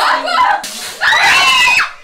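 A man screams loudly for about a second, cutting off sharply, just after a short hissing rush.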